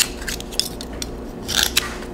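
A knife blade clicking and scraping against the shell of a raw Manila clam as it is pried open, with a sharp click at the start and a louder scrape about one and a half seconds in.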